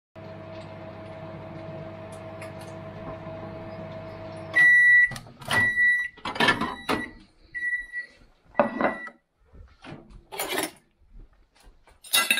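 Microwave oven running with a steady hum that stops about four and a half seconds in, then beeping several times at a high pitch as the cycle ends. The door is opened and a plate taken out, with clicks and knocks among the beeps.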